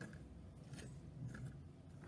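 Quiet small-room background with a low steady hum and a couple of faint, brief soft rustles.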